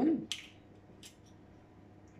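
Two faint, brief clicks of eggshell halves as a yolk is tipped from one half to the other to separate the egg white, the second click fainter.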